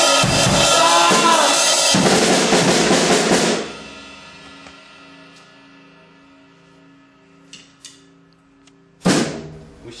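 A drum kit is played loudly, a dense clatter of drum and cymbal hits, and then stops abruptly about three and a half seconds in. A quiet steady hum follows, with a couple of faint clicks, until a sudden loud burst near the end.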